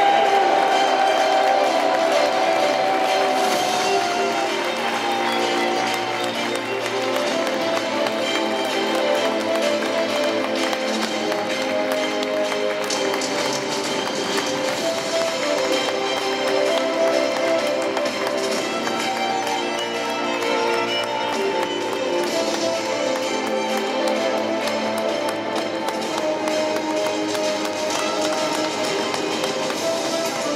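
Music playing, with steady held notes over a noisy background; a single held tone slides downward over the first few seconds.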